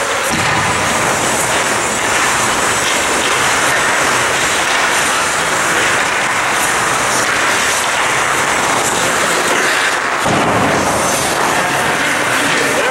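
Loud, steady ice rink noise from a hockey drill: skate blades scraping and carving the ice with stick and puck sounds, over a constant rumble that thins about ten seconds in.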